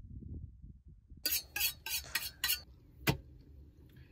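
Kitchen clatter of a metal knife and utensils: a quick run of five sharp clinks or scrapes, then a single sharp click, after a faint low rumble at the start.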